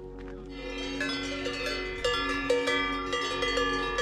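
Several cowbells on grazing cows clanking irregularly, each strike ringing with a metallic tone, over soft background music.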